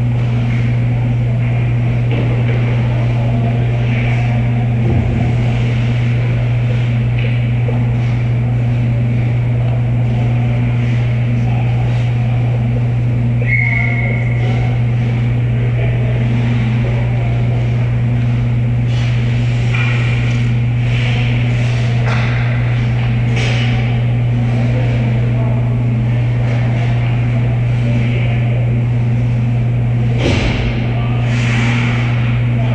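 Ice hockey play in an indoor rink over a loud, steady low machine hum: scattered clacks of sticks, puck and skates on the ice. A short referee's whistle blast comes about halfway through.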